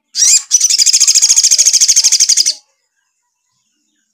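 Male olive-backed sunbird singing: a short rising note, then a fast high trill of about a dozen notes a second lasting some two seconds, which stops abruptly.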